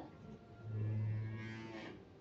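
A low, steady-pitched drone, just over a second long, starting about half a second in.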